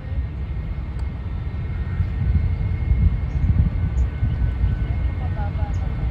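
Wind buffeting the microphone: an uneven low rumble that rises and falls in gusts. A faint distant voice comes in near the end.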